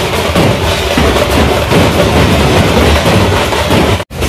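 Loud music with drums and percussion.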